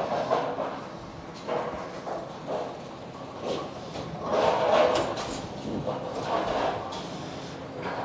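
Bowling alley pinsetter machinery cycling, with uneven rumbling and clattering as the deck is cleared and a new rack of pins is set. It is loudest about halfway through.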